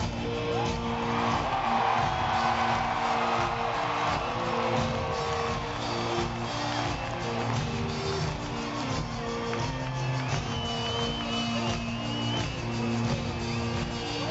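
Rock band playing live in an arena, heard from high in the stands: held chords that change every second or two, with guitar, over crowd noise.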